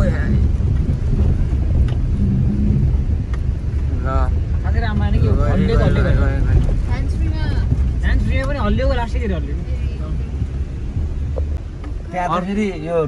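Steady low rumble of a car's engine and tyres on a rough mountain road, heard from inside the cabin. About a third of the way in, people start talking over it for several seconds.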